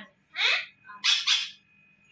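Alexandrine parakeet calling: a rising call about half a second in, then two harsh squawks in quick succession.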